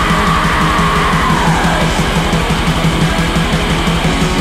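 Heavy metal music with distorted guitars over fast, dense drumming. A high held note slides down in pitch between about one and two seconds in.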